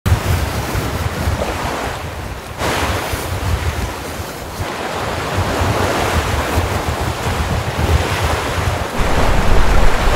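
Strong wind buffeting the microphone over the rushing and splashing of rough sea waves around a sailboat under way. The wind grows louder near the end.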